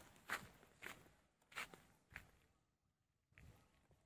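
Faint footsteps of a person walking over hardened volcanic deposit: four soft steps about half a second apart in the first two seconds.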